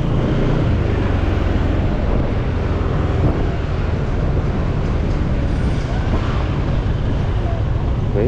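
A motorcycle engine running steadily at low road speed, with road and wind noise and the hum of surrounding street traffic.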